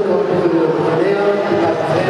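A man talking into a handheld microphone; the words are not made out.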